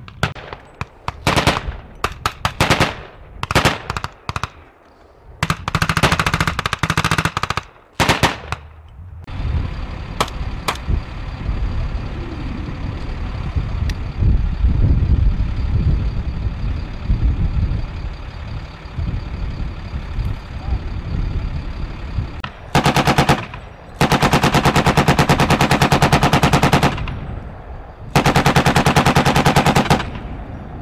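Machine-gun fire in rapid bursts: several short bursts in the first nine seconds, then a long run of fast bursts near the end. Between them a military vehicle's engine runs steadily for about thirteen seconds.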